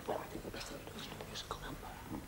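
Faint, indistinct whispering between two men conferring in private.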